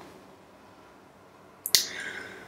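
Quiet room tone, then near the end a single sharp mouth click followed by a short breathy hiss: a man parting his lips and drawing breath before speaking.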